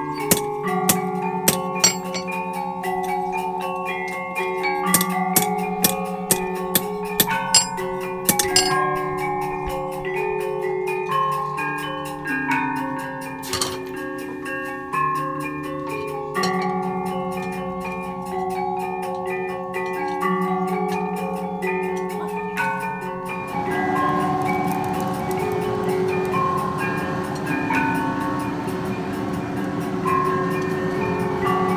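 Gamelan music of ringing metal-keyed metallophones, with long sustained notes stepping through a melody. Over it, in roughly the first nine seconds, a hammer strikes iron on an anvil in quick, sharp blows.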